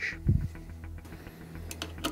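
A soft knock and a few faint small metal clicks as the oil burner's escutcheon plate is worked into its zero notch, over a steady low hum.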